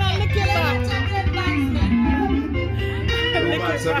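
Live band playing, with a strong sustained bass guitar line under guitar, and voices over the music.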